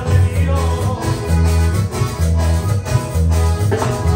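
Live ranchera dance music from a small band: accordion, electric bass, acoustic guitar and drum kit playing together, with a bass line pulsing about twice a second.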